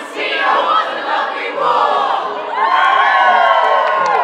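A group of young voices cheering and whooping together, many voices at once. A long held shout slides down in pitch over the last second or so.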